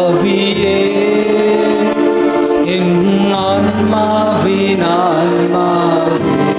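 A hymn to the Holy Spirit, sung with instrumental accompaniment: long, wavering vocal notes over sustained chords and a steady ticking beat.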